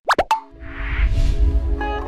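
Two quick rising 'plop' sound effects, then music with a deep bass comes in, with a swelling whoosh about a second in and held notes near the end.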